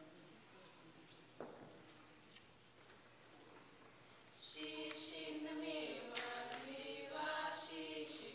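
Quiet room noise with a couple of faint knocks, then a group of voices begins singing together, unaccompanied, about halfway through.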